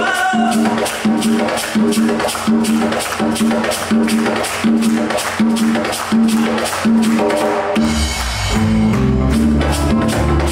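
Live band playing an Afro-Dominican groove on guitar, electric bass and congas, with quick high percussion strokes over a steady beat. Deep bass notes swell in about eight seconds in.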